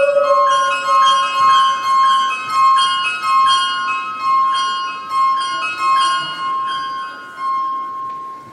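Close of a Ukrainian folk song: the singer's last held note fades out about a second and a half in, while a bandura plays on alone in a ringing plucked figure of repeated bright notes. The playing grows quieter toward the end.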